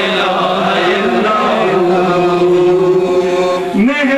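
A man chanting manqabat, devotional praise poetry, in long drawn-out vowels with ornamented turns. He holds one low note for about two seconds, then slides up to a higher held note near the end.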